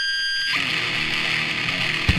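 Heavily distorted electric guitar cutting in abruptly, holding a few high steady tones for about half a second before spreading into a dense wall of distorted noise.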